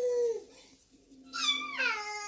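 Baby vocalizing: a short held 'aah' at the start, then about a second and a half in, a loud high squeal that slides down in pitch.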